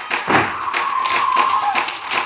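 Rhythmic clapping in a Samoan group dance, sharp and even at about four beats a second. A single voice holds a long call over it through the middle.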